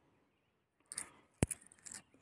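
Faint handling sounds of two euro coins shifting in a palm: brief rustles about a second in, then one sharp click a moment later.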